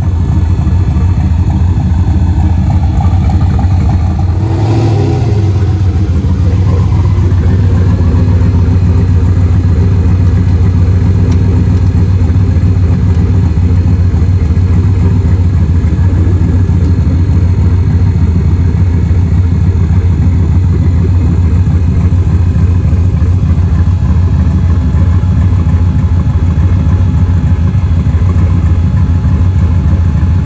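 Ford Mustang's V8 idling loud and steady, with a brief rise and fall in pitch about five seconds in.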